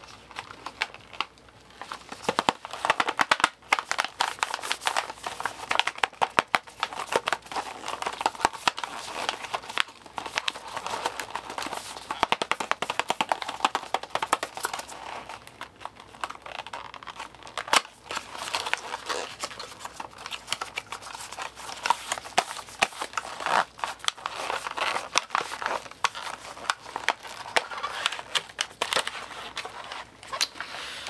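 Packaging being handled and crinkled, a dense, continuous run of small crackles and clicks.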